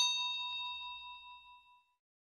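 A bell-like 'ding' notification sound effect, struck once and ringing out with a clear tone before fading away over nearly two seconds.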